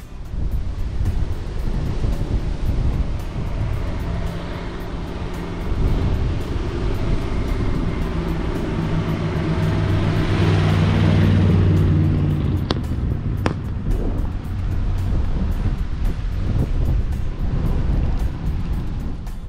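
A 1953 Ford Crestline Sunliner's 239 cubic inch flathead V8 running as the car drives up and past. It is loudest as it goes by, about ten to twelve seconds in, then fades as the car moves away.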